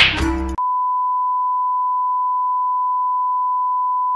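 Background music cuts off abruptly about half a second in and is replaced by one long, steady, single-pitched electronic beep, like a censor bleep or test tone, that holds unchanged.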